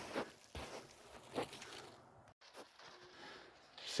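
Faint footsteps crunching in packed snow, a few soft steps in the first second and a half, then near silence.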